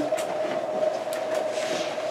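A steady hum at one pitch, with a few soft clicks and a brief rustle in the second half.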